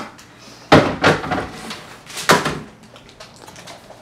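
Two clunks about a second and a half apart, with lighter knocks and rattles between and after, as a foil-covered baking pan and containers are shifted about on refrigerator shelves.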